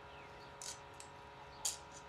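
Two brief soft rustles of a baby blanket being tucked in, about a second apart, over a faint steady hum.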